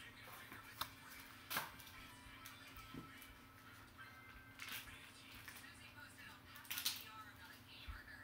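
Faint handling of card packaging: cardboard box flaps, a black pouch and a clear plastic sleeve around a graded card slab, heard as a few brief crinkles and clicks, the sharpest about a second and a half in and just before the end.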